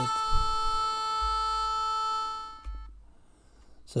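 A single held trumpet note from LMMS's built-in trumpet sample, previewed from the sample browser. It sounds steadily for about two and a half seconds and then stops.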